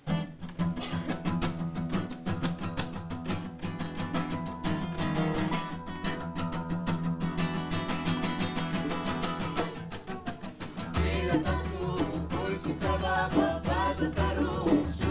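Live acoustic band starting a song: strummed acoustic guitar with violin. A hand drum comes in about eleven seconds in, and group singing follows near the end.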